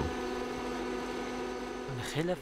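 Electric-motor-driven flour mill running steadily: a constant hum and whir with no change in pitch.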